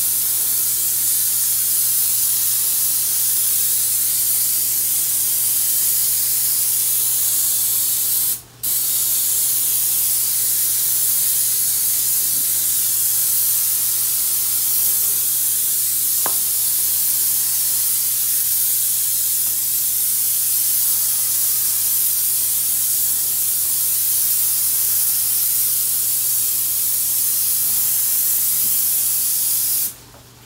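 Paint spray gun spraying soundproofing paint onto a wall: a steady hiss of atomising paint that breaks off briefly once, about eight and a half seconds in, when the trigger is let go.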